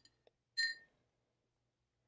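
One short, sharp click a little over half a second in, with quiet room tone around it.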